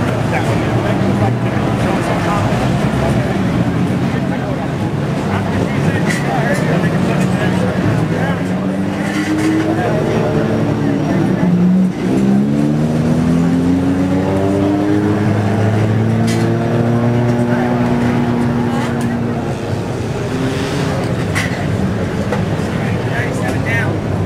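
Race car engines running throughout. In the middle stretch, one engine's pitch climbs and slides up and down, as in revving or a car going by.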